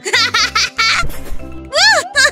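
A cartoon character's high-pitched giggling over background music, ending in a long squeal that rises and falls.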